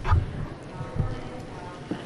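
A few footsteps and shuffling on a hard floor, with faint voices in the background.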